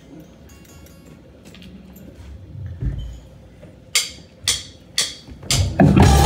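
Sharp hand claps, about two a second and growing louder, start about four seconds in, keeping a steady downbeat. A single low thump comes just before them.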